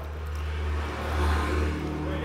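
A vehicle engine running, a low steady hum that grows louder about a second in and then eases off.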